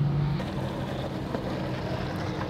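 A steady low engine hum running in the background, with one faint click about a second in.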